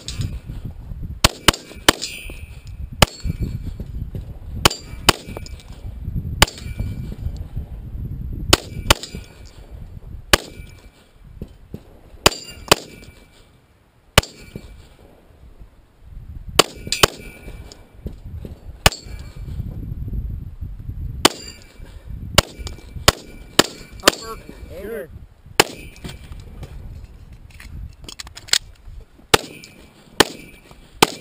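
Handgun shots fired at steel targets, about thirty in uneven strings with short pauses between them. Some shots are followed by the ring of steel being hit.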